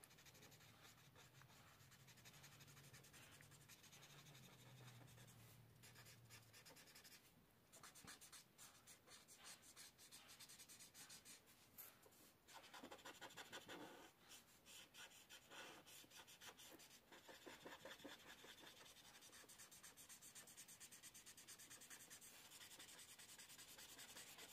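Faint scratching of a felt-tip alcohol marker stroking back and forth across paper as a red is blended in. There is a faint low hum for the first seven seconds or so.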